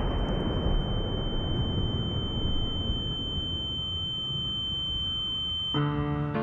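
Low rumble dying away after an explosion, with a steady high-pitched ringing tone over it like ringing ears. Both cut off near the end as piano music comes in.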